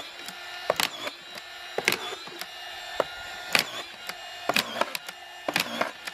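Cordless DeWalt screwdriver with a collated screw magazine attachment driving a strip of screws into pallet wood. The motor runs with a steady whine, broken by a sharp clack roughly once a second as each screw is fed and sent home.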